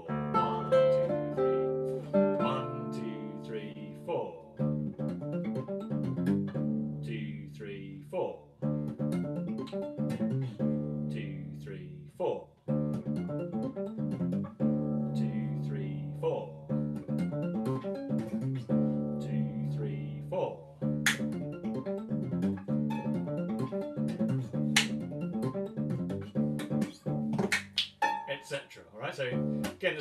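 Nylon-string classical guitar played solo: a rhythmic pentatonic piece with a steady pulse over a low bass line. A few sharp percussive snaps stand out in the second half.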